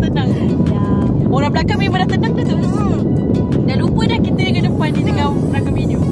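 A car's air conditioner blowing steadily inside the cabin: a loud, even, low rush of air that never lets up.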